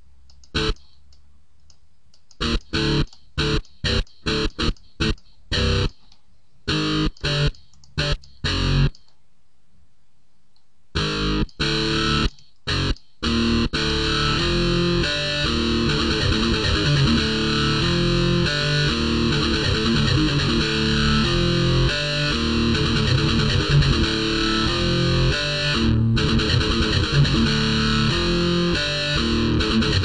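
FL Slayer, FL Studio's electric-guitar emulator plugin, playing distorted guitar. First come short separate notes with gaps between them. After about 14 seconds a continuous low, palm-muted chugging metal riff plays.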